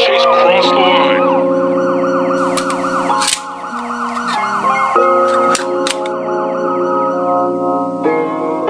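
Rapid siren yelp, its pitch sweeping up and down several times a second, over held synthesizer chords that change every second or so, with a few sharp clicks.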